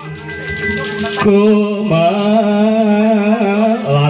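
Javanese gamelan music for an ebeg dance: a voice sings a long, wavering line over the ringing of bronze gongs and kettle gongs.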